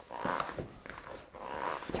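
Sticky white bread dough being stretched and folded by hand in a mixing bowl and pushed down with the knuckles: a few soft, wet squelches with a couple of light knocks.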